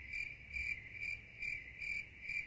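Crickets sound effect: a steady, high cricket chirping that pulses about two to three times a second. It is dropped in as the comedic 'crickets' gag for a remark met with silence.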